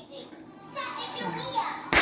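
A man and a toddler making playful, wordless vocal sounds, with a man's voice sliding down in pitch. Near the end comes one sharp slap, the loudest sound.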